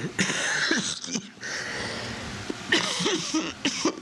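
A person coughing in two fits: a short burst at the start, then a longer run of harsh coughs about three seconds in.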